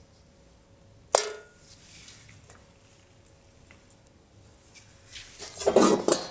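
A single sharp clink with a short ring about a second in, then a few faint small taps, and handling noise that grows near the end as the semicircular board is lifted off its hanging pin.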